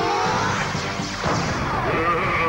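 Sci-fi blaster sound effect: a rising electronic zap as a monster's arm cannon fires, then a crash-like impact a little past a second in, over background music.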